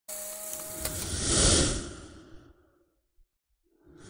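Whoosh sound effect of an animated logo intro: a rushing swell that builds for about a second and a half and then fades out by the middle, with a brief tone and a click near the start.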